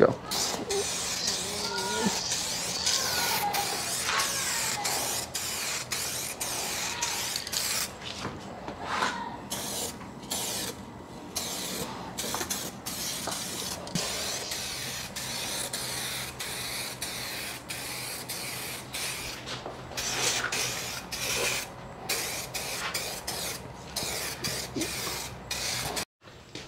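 Aerosol can of 2K clear coat spraying in many short hissing passes, each cut off sharply, as a second coat goes onto a car's side mirror.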